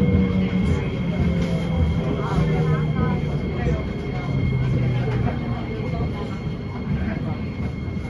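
SMRT C751B (Kawasaki–Nippon Sharyo) metro train running along the elevated line, heard from inside the carriage: rumbling wheels on rail under a low motor hum that steps down in pitch as the train slows, with a thin steady high whine above.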